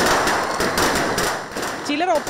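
Ground fountain fireworks going off: a loud, steady hiss peppered with rapid crackling pops, fading toward the end.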